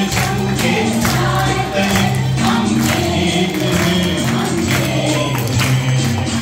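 A group of voices singing together in held, melodic phrases over a steady percussion beat.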